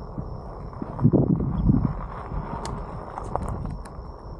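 Bike tyres rolling and crunching over a gravel road, with wind rumbling on the camera microphone. The rumble swells about a second in, and a few sharp clicks come in the last second. A thin, steady high tone sits above it.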